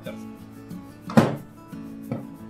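Background guitar music with steady held notes; about a second in, one sharp knock as the dough and hands hit the stainless-steel mixing bowl during kneading.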